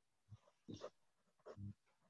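Near silence, broken by three faint, short sounds about a third of a second, three-quarters of a second and a second and a half in.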